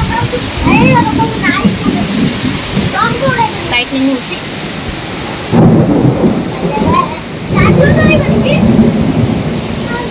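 Heavy rainstorm: steady rain with strong gusty wind through the trees. Loud low rumbling surges come in waves, one starting at the beginning, another about five and a half seconds in and another near eight seconds.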